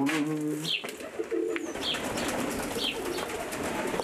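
A flock of domestic pigeons cooing, with low calls near the start and again about a second and a half in. Short high chirps come about once a second over a steady background noise.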